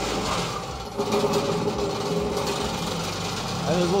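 Diesel engine of an air curtain burner running as its clutch is engaged about a second in, taking up the load of the large air-curtain fan; a steady hum enters and a low tone climbs slowly as the fan spins up against its inertia.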